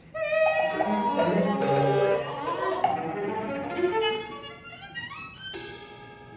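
Chamber ensemble music from a contemporary opera score, led by violin with cello beneath, several instruments playing at once, with a quick rising run of notes just before the end.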